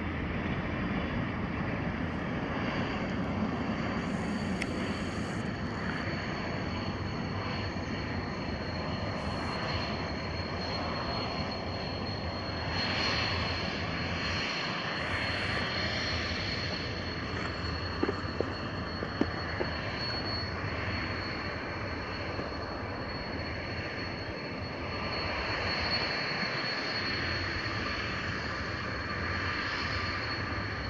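Avro RJ85 with its four Honeywell LF507 turbofans running at low taxi power: a steady broad engine rush with a constant high-pitched whine over it. A few short clicks come a little past halfway.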